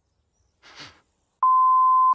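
A single steady pure beep tone, starting a little past halfway and lasting under a second: the bleep used to censor a word in an edited clip. Before it comes a brief faint breathy sound.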